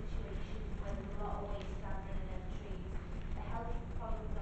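Faint, distant speech in a large room over a steady low rumble.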